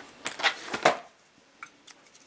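Plastic Bic felt-tip markers being handled: a quick run of clicks and taps in the first second, then two faint ticks near the end.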